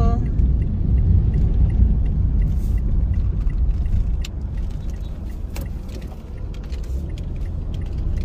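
Car cabin road noise: a steady low rumble of engine and tyres while driving, which eases off about halfway through as the car slows to turn in.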